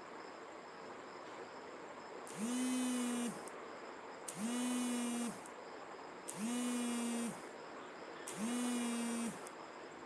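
Mobile phone vibrating: four buzzes about a second long, two seconds apart. Each slides up in pitch as the vibration motor spins up and drops as it stops.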